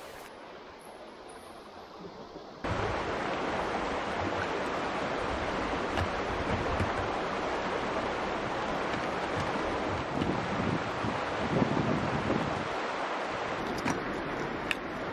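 Steady rushing of a fast, shallow stream over rocks, quieter at first and then jumping abruptly to a loud, even rush about three seconds in, with a few low bumps late on.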